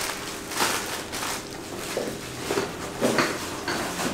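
Plastic bag rustling and crinkling with a few irregular knocks as barbell collars are handled and packed into it.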